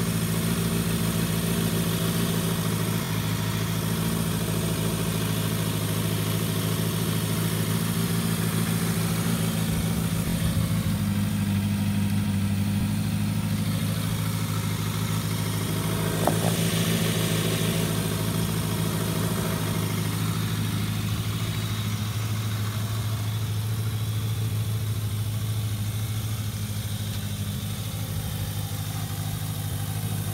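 Kawasaki Ninja ZX-6R 600cc four-cylinder engine idling steadily. A single short click sounds about halfway through.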